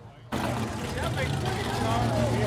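Car engines idling with a steady low rumble, under the chatter of a crowd of voices. The sound begins abruptly about a third of a second in.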